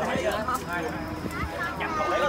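Several people talking over one another around a shared meal, with a few light knocks and clinks of dishes and utensils.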